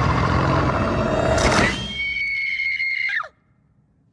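An animated fox character's snarling growl over loud dramatic music. Then a young woman's voice, as a cartoon rabbit, gives one high, held scream that bends downward and cuts off a little past three seconds in.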